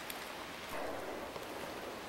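Faint, even hiss of outdoor forest ambience, with a soft brief swell a little under a second in.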